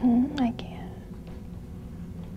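A brief wordless vocal sound from a woman, about half a second long at the start, dipping slightly in pitch.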